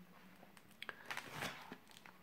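Faint handling sounds of an opened mediabook: a few light clicks and a soft rustle as hands move over its plastic Blu-ray tray and disc.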